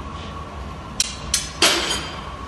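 Hot blown-glass bowl cracking and breaking off its punty: two sharp cracks about a second in, then a louder crash. The bowl is being broken off on purpose, not annealed, after water was put on the punty.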